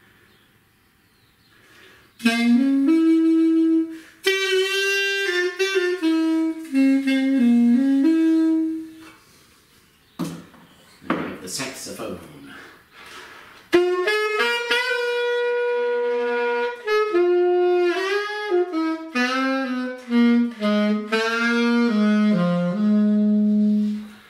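Alto saxophone playing two short mid-range melodic phrases, the notes stepping up and down. There is a pause of a few seconds between the phrases.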